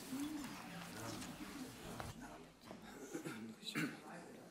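Faint, low voices murmuring in a quiet hall, with a soft pitched glide near the start and a few small rustles and clicks.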